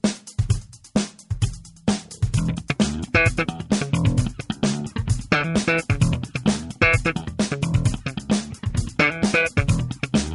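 Ernie Ball Music Man StingRay 5 five-string electric bass played in a funk groove, with fast three-finger percussive notes: a dense run of sharp attacks, several a second, with brighter ringing notes breaking through now and then.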